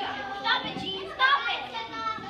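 Several young girls chattering and calling out over one another, with a couple of louder calls partway through.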